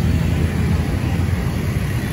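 Steady low rumble of road traffic, with motorbikes and cars passing.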